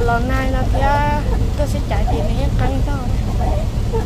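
Steady low rumble of a vehicle's engine and tyres on a wet road, heard inside the cabin while driving. A person's voice sounds over it in the first second or so and in snatches after.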